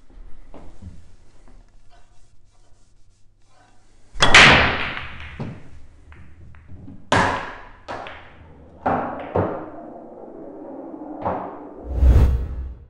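Pool break shot: about four seconds in, a loud crack as the cue ball hits the racked pack, then balls clattering and rolling. Over the next few seconds come several separate knocks as balls hit the cushions or drop into the pockets, and another loud thump right at the end.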